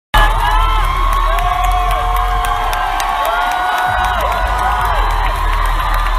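Arena crowd screaming and cheering, many high voices overlapping, over loud music with a heavy bass beat that drops out briefly a little past halfway.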